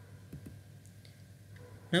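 Quiet room tone with a few faint clicks, the clearest about a third of a second in, then a man's voice starts speaking just before the end.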